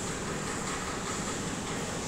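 Steady background noise with no speech: an even, constant hiss with no distinct events.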